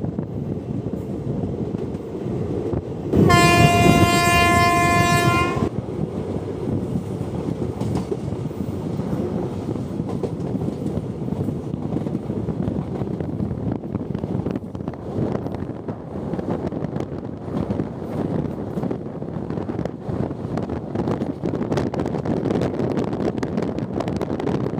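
Indian Railways passenger train running at speed, heard from the side of a moving coach: a steady rumble of wheels on rail, with the train's horn sounding once for about two seconds a few seconds in.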